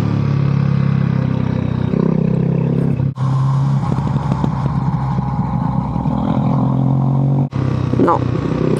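Motorcycle engine running at a steady pace while riding, with wind and road noise over it. The sound drops out briefly twice.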